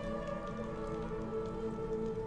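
Soft background score of sustained, held notes, with a faint crackly hiss underneath.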